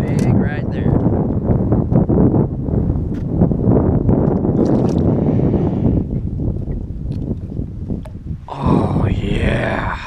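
Heavy wind buffeting the microphone, a loud rumbling rush, with water splashing as a largemouth bass is grabbed and lifted out at the boat's side. Near the end a short pitched sound rises briefly above the wind.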